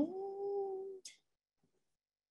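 A woman's drawn-out vocal sound, sliding up in pitch and held on the higher note for about a second, then a brief breathy hiss.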